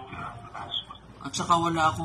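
A woman's voice: quiet in the first second, then louder from about one and a half seconds in, with a wavering pitch.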